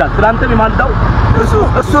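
A man talking loudly close to the microphone, with road traffic going by behind his voice.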